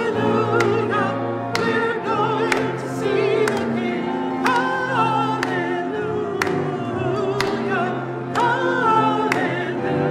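A church music group singing a hymn in parts, voices with vibrato, over a keyboard or piano accompaniment with chords struck about once a second.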